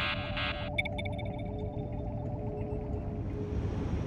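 Synthesized sci-fi sound effects: a rapid electronic buzzing pulse, about four a second, cuts off under a second in, followed by a few light clicks and a steady low rumbling hum with faint held tones.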